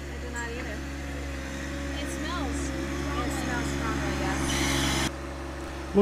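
John Deere 1025R sub-compact tractor's three-cylinder diesel engine running steadily at a constant speed, with a brief hiss about four and a half seconds in.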